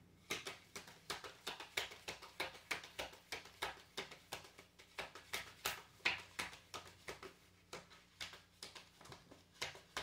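Tarot deck being shuffled by hand: a steady run of short card clicks and slaps, about three a second.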